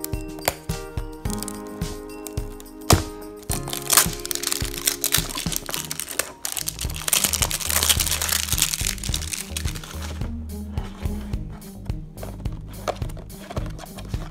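Clear plastic shrink-wrap crinkling and tearing as it is peeled off a small cardboard box, loudest in the middle stretch, over background music.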